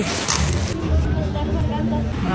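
Bags of garbage thrown onto a rubbish heap: a short rustling crash of plastic and cardboard in the first half second, followed by a low steady rumble.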